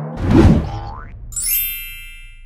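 Logo sting sound effect: a loud low hit with a rumble about half a second in, a short rising tone, then a bright ringing chime with many overtones that fades out.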